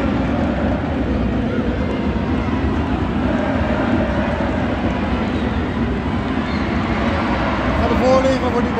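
Stadium crowd noise from the stands: a steady din of many voices, with a voice briefly standing out about halfway through.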